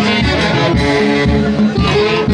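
Live band music with accordion and harp playing a dance tune over a steady beat.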